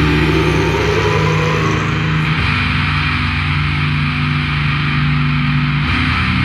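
Death-doom metal music: heavily distorted low guitars holding slow, sustained chords, moving to a new chord about two seconds in and again near the end.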